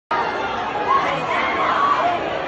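Concert crowd chattering and shouting, with a few high voices calling out over the hubbub.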